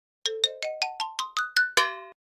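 A synthesized chime sound effect: a quick rising run of about ten short bell-like notes, each a step higher, ending on a brief held chord. It marks the second point appearing on the graph.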